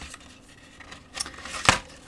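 A solderless breadboard in its packaging is pushed back into a plastic compartment case. After a quiet start come a few light clicks of handling, then one sharp plastic click about three-quarters of the way through.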